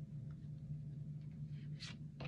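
Quiet room with a steady low hum and the faint handling of Pokémon trading cards being shuffled in the hand, with one brief swish of a card sliding near the end.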